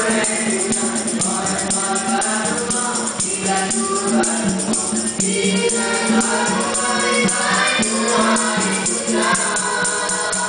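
Nasyid group of boys singing in vocal harmony through microphones and loudspeakers, with light hand percussion keeping time underneath.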